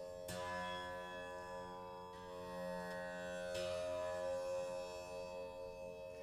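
Rudra veena's low kharaj strings plucked softly and left ringing together, sounding the same note (Sa) in unison to show that they are tuned alike. A pluck comes just after the start, and further notes join about two and three and a half seconds in.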